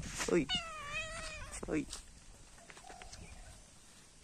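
A kitten meowing once, about half a second in: one call of about a second with a wavering pitch.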